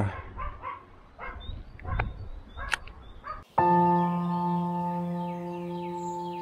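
Birds chirping and a dog barking a few times. About halfway through, ambient background music with a sustained held chord starts abruptly and carries on.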